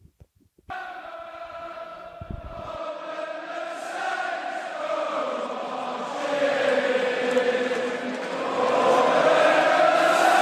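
Many voices singing a chant together in unison. It starts about a second in and grows steadily louder.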